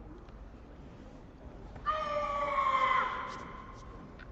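A female karate competitor's single loud shouted call, held for about a second with a slight fall in pitch, announcing the name of her kata before she begins.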